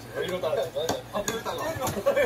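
Young men talking and laughing in Korean through the reaction video's playback, with a few sharp clicks, the loudest about a second in.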